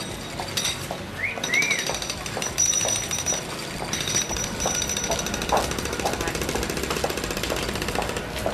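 Busy street ambience: a steady, rapid mechanical rattle like a pneumatic drill runs under the chatter of a market crowd. A short chirping whistle comes about a second and a half in.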